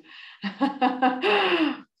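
A woman laughing: a quick breath in, a few short laughs, then a long laugh that falls in pitch.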